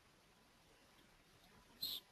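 Near silence: faint room tone, with one brief high-pitched squeak near the end.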